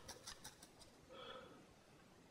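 Near silence, with a few faint clicks in the first second as fingers handle a painted miniature on its holder.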